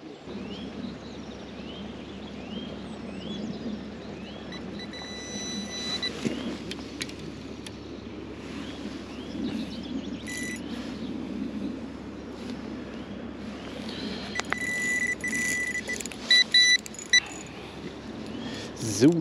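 Electronic bite alarm beeping: a few single tones at first, then a run of repeated beeps near the end as a fish takes line on the bottom rig.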